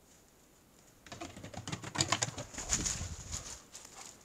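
Footsteps on a wooden plank bridge and through dry fallen leaves, a quick run of crunches and knocks with camera-handling rustle, starting about a second in.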